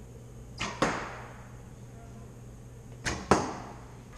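Two recurve bow shots about two and a half seconds apart, each a quick double crack a quarter second apart: the string released, then the arrow striking the target.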